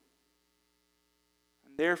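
Near silence with a faint steady electrical hum, then a man's speaking voice starting again near the end.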